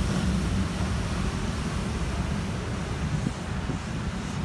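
Steady rumble of a car driving, heard from inside the moving car, with no sudden events.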